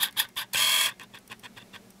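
Plastic Lego pieces handled close to the microphone: a quick run of small clicks, a short scraping rasp about half a second in, then a few fainter clicks.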